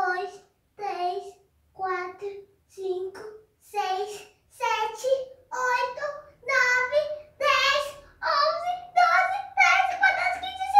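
A young girl's voice counting aloud, one drawn-out number about every second, timing how long she holds a handstand. The numbers grow louder, longer and higher-pitched toward the end.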